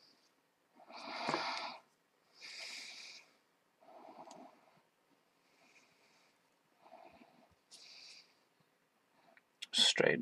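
A person breathing audibly in and out, close to the microphone, about once every second and a half. A quick cluster of sharp clicks follows near the end.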